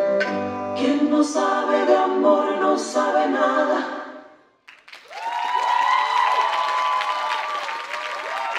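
The last sung notes of a recorded song with a woman singing lead and backing voices, fading out about four and a half seconds in. About half a second later an audience breaks into applause and cheers.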